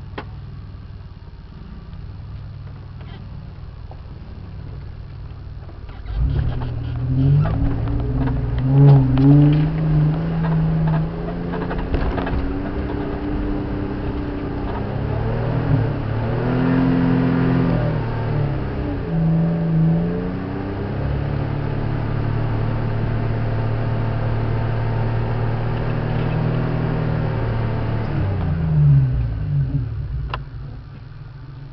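A 4x4's engine idling low, then revving up about six seconds in as the vehicle pulls away over a rough, rocky bush track, with knocks and rattles from the body and bull bar. It then runs steadily under light load in low gear and eases off near the end.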